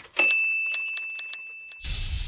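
Typewriter sound effect: keys clacking at a few strokes a second, then a single bell ding like a carriage-return bell that rings and slowly fades. Near the end a low noisy rush swells in.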